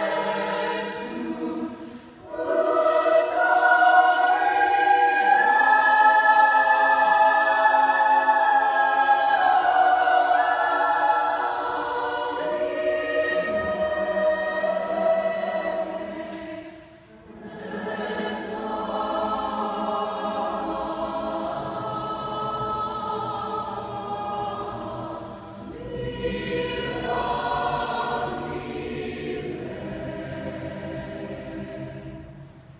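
A mixed high school choir singing a cappella in a church, holding long sustained chords. The singing breaks off briefly three times between phrases, about two, seventeen and twenty-five seconds in.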